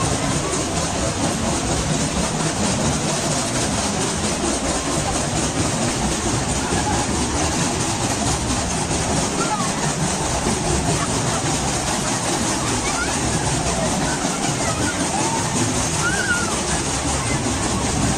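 Steady fairground din: a babble of voices and background music over the running noise of a spinning amusement ride, with a few short high-pitched calls rising out of it.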